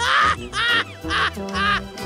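Comic duck-quack sound effect, four short quacks about half a second apart, over background music.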